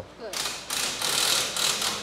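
Ratchet wrench being worked in four quick strokes, each a run of rapid metallic clicking.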